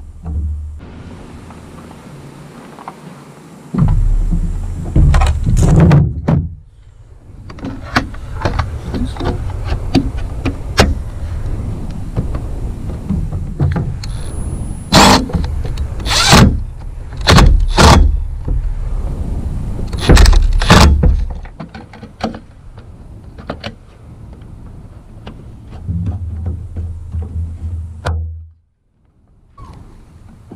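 Cordless impact driver with a Torx bit running in several bursts as it drives screws into the roof-rail feet. There are loud sharp knocks and clacks, most of them between about a quarter and two thirds of the way through.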